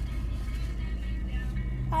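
Steady low rumble inside a car's cabin, with music playing underneath.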